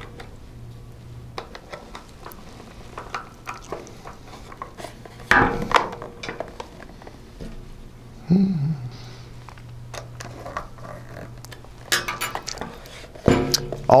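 A small screwdriver driving the little screws that hold the front panel of a metal 3.5-inch SATA drive enclosure: light metallic clicks and scrapes, with a few louder knocks from handling the case, over a steady low hum.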